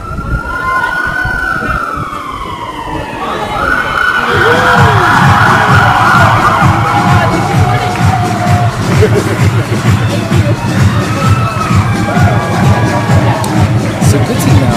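Loud street-protest din: a wailing, siren-like tone and music with a pulsing beat over crowd voices, growing louder about four seconds in.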